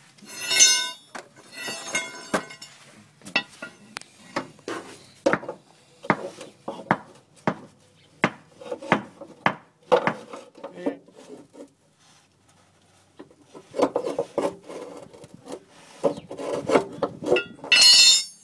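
Crowbar prying at a rear leaf-spring shackle and its rubber bushings: repeated metal knocks, clanks and scrapes. A ringing metal clang comes right at the start and again at the end, with a short lull in the middle.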